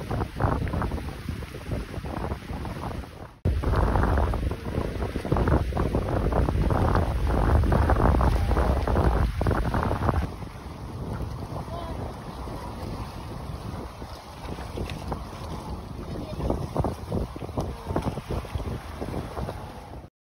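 Wind rumbling on the microphone over a small open boat moving across water, with water splashing at the hull; it grows louder for a stretch near the middle.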